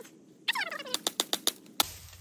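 Green bamboo cane being cut at its base: a rapid run of sharp cracking clicks, then a single sharp crack near the end as the cane breaks off badly.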